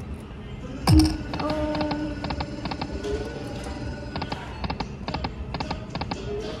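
Video slot machine spinning its reels: a deep falling boom about a second in, then a short electronic tune with steady tones, and runs of quick clicks as the reels spin and stop.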